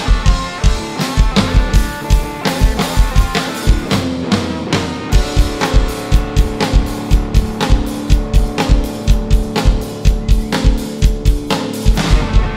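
Live rock band playing an instrumental passage without vocals: a drum kit with a steady, driving kick drum under guitar. The kick drops out for about a second near four seconds in, then comes back.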